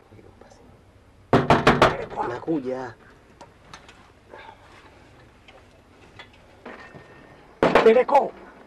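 Loud knocking, a run of about four quick blows, with a voice crying out over and after it. Another loud burst with a voice comes near the end.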